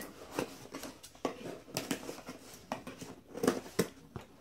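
Light handling noises: about half a dozen separate clicks and taps at irregular intervals, with faint rustling, as hands work at pacifier packaging.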